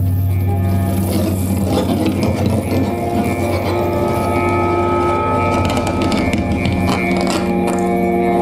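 Live electroacoustic free-improvised music: a steady low drone with several held tones layered above it, over a dense, grainy texture of small clicks.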